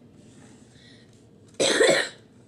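A person coughing once, a short loud cough near the end after a quiet stretch of room tone.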